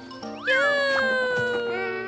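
A long drawn-out cartoon voice cry starting about half a second in, held for about a second and a half and gently falling in pitch, with children's music underneath.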